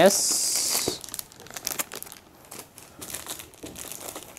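Clear plastic wrapping of a packaged sarong crinkling as it is handled, loudest for about the first second, then softer intermittent rustles and crackles.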